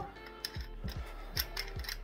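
Threaded metal end cap of a collapsed expandable baton being turned by hand, giving about four faint clicks as it turns. The cap works loose each time the baton is closed.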